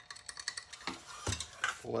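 Duckbill pliers and a sheet-metal piece clicking and knocking as the metal is bent back by hand against a stiff bend: a run of light metallic ticks with two sharper knocks in the second half.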